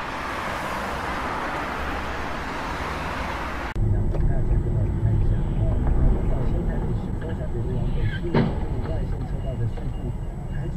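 Dashcam audio from inside a car: a steady hiss of rain and tyre spray on a wet road. About four seconds in it cuts abruptly to a louder, lower rumble of engines in city traffic. A single sharp knock comes about eight seconds in, near a scooter crash.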